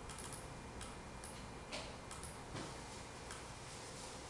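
Faint, irregular clicks from a laptop being operated, over a low steady room hum.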